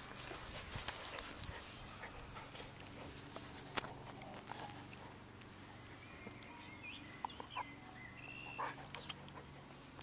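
Welsh springer spaniel mouthing and chewing a plush toy: soft rustling and small clicks, with faint, high, thin whimpers in the second half.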